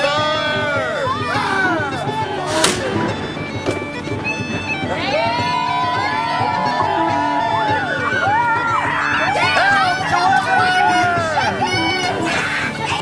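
Bagpipe music: steady drones under the chanter's melody of held and sliding notes. A single sharp crack about two and a half seconds in.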